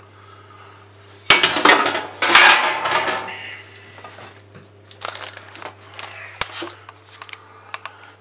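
A metal baking tray and kitchen utensils clattering and scraping. A loud burst of about two seconds starts a second in, followed by a few lighter knocks and clicks.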